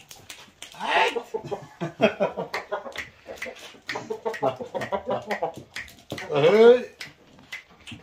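People talking among roosters, with the roosters calling, and one loud rising-and-falling call about six seconds in.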